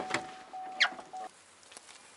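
Car's open-door warning chime: a steady electronic tone in short repeating stretches that cuts off a little past halfway. Clicks and knocks of the door being handled sound with it, and a short, sharp squeak near the middle is the loudest moment.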